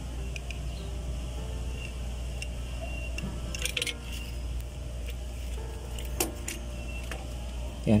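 Steady low background hum with faint voices in the distance, broken by a few short light clicks about halfway through and twice more near three-quarters through.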